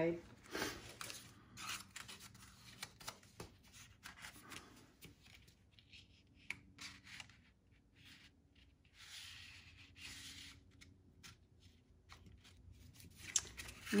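Faint rustling and rubbing of painted paper being handled and folded on a cutting mat, with many small clicks and a longer soft scraping stroke about nine seconds in.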